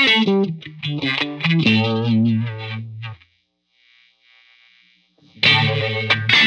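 Electric guitar played through a Farm Pedals Fly Agaric, a vintage vibe-voiced four-stage phaser: a picked line of single notes and chords that stops about three seconds in. After a near-silent gap of about two seconds, the playing starts again loudly near the end.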